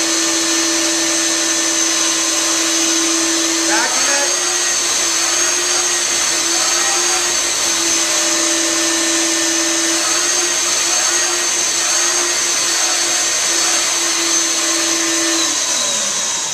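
Carpet-cleaning extraction machine running through a hand tool, its vacuum motor giving a loud, steady whine and rush of suction as it rinses and pulls water back out of a carpet sample. It shuts off at the very end.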